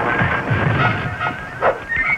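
Dramatic film score mixed with a monster's sound effects: low growls in the first half and a sharp cry near the end.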